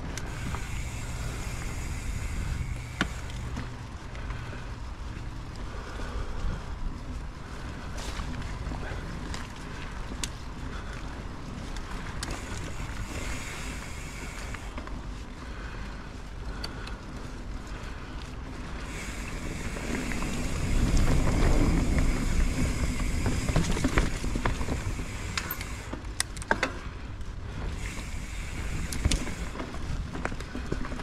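Mountain bike rolling along a dirt forest singletrack: a steady low rumble of tyres and air on the handlebar-view microphone, with scattered clicks and rattles from the bike over roots and bumps. The rumble grows louder for several seconds about two-thirds of the way through.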